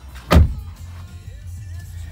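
A single heavy thump about a third of a second in, over the steady low hum of the truck's 5.7-litre Hemi V8 idling, heard from inside the cab.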